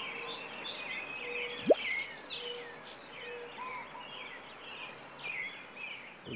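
Wild birds singing and chirping outdoors, many short overlapping calls and trills. A single brief, loud upward-sweeping blip cuts through about a second and a half in.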